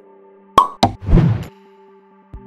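Sound effects of an animated end-card: two sharp pops a quarter second apart about half a second in, then a short swoosh just after one second, over a steady held music chord.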